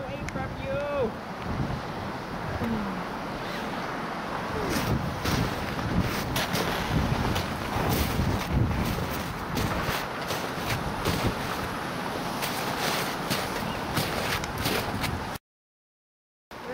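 Wind buffeting the microphone, with faint voices in the first three seconds. From about five seconds in, a string of irregular crisp crunches, and the sound cuts out for about a second near the end.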